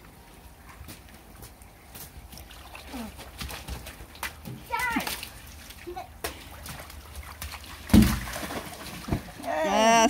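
Water balloons bursting and splashing on a wet slip and slide: a scatter of sharp wet slaps, with one loud splash about eight seconds in.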